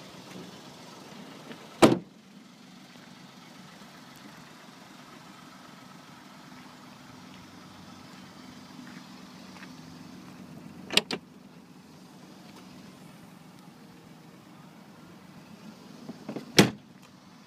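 A Peugeot 107's door shut with one loud thump about two seconds in, then a sharp double click about eleven seconds in as the rear glass hatch is unlatched and opened, over a faint steady low hum.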